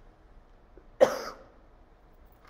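A woman coughs once, a single short sharp cough about a second in.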